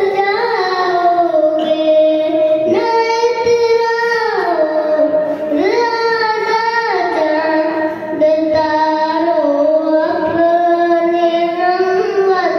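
A young boy singing a naat, an Urdu devotional song in praise of the Prophet, solo and unaccompanied, in long held notes that slide and bend between pitches.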